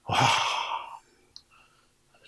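A man's long, breathy "wah" (wow) of admiration, almost a sigh, lasting about a second.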